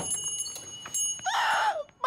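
Small brass shop-door bell ringing once as the door opens, its high tones ringing on for about a second. Near the end comes a short vocal exclamation.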